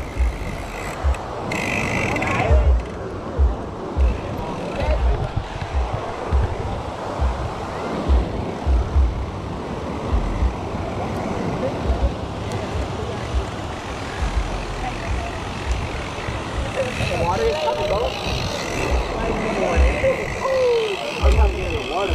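Wind buffeting the microphone in irregular low thumps over a steady wash of surf, with faint voices near the end.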